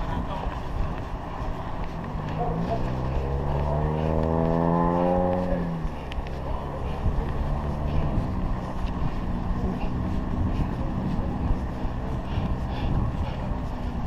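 Wind and road rumble on a chest-mounted camera while cycling. About two seconds in, a motor vehicle's engine comes in, rising steadily in pitch as it speeds up for a few seconds before dropping away, and a fainter engine hum follows later.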